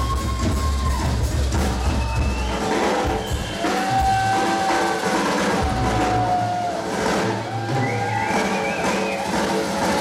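Live rock band playing amplified through a club PA: drum kit and bass under a melody of long held notes, the longest drawn out for about three seconds midway.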